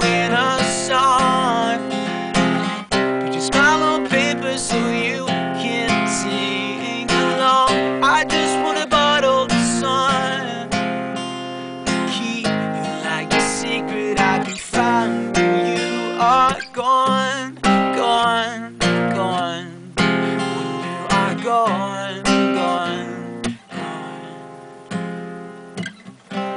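Acoustic guitar strummed and picked in an instrumental passage between verses of a song.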